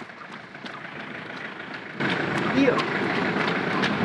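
Roadside traffic noise: a steady rush of passing vehicles on a wet road, stepping up suddenly to a louder level about halfway in.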